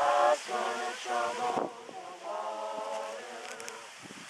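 Church choir singing a cappella: two sung phrases with a short break about halfway through.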